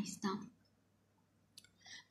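A woman's voice ends a word, followed by about a second of near silence; near the end come a few faint clicks before she speaks again.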